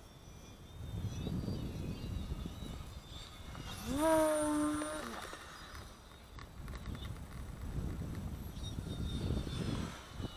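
Electric RC plane's motor and propeller whining on a pass: the pitch rises, holds for about a second, then drops away about five seconds in. Gusty wind rumble on the microphone before and after.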